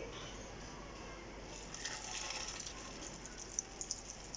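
Hot oil in a nonstick frying pan starting to sizzle and crackle as a shami kabab patty is laid in to shallow-fry, the sizzle getting brighter about two seconds in.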